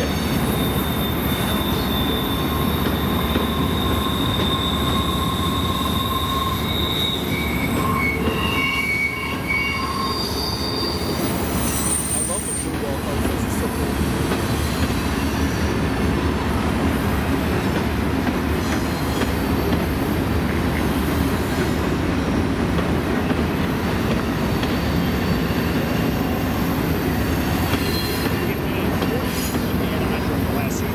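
Freight train of intermodal well cars rolling through a curve: a steady rumble of wheels on rail, with high-pitched flange squeals that come and go, strongest in the first ten seconds.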